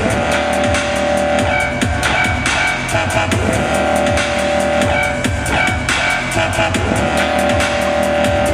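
Loud dubstep played live through a sound system: a steady beat with fast regular ticks over sustained synth tones and heavy bass.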